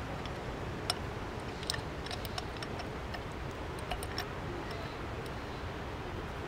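Light, irregular metal clicks and ticks as a tripod bowl adapter and leveling base are screwed together by hand, over a steady background hiss.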